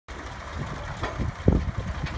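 Forklift engine running, a low steady rumble, with one sharp knock about one and a half seconds in.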